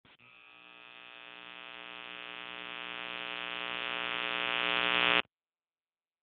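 A steady electronic buzzing tone of a logo intro, rich in overtones, swelling steadily louder for about five seconds and then cutting off suddenly.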